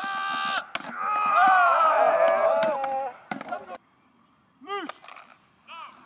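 A group of voices yelling a long, drawn-out battle cry, with several sharp knocks mixed in. The cry cuts off just before four seconds in, and two short calls follow near the end.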